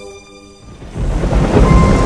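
The last of a held organ chord fades out, then after a brief hush a loud, deep rumbling noise swells in about a second in and stays loud.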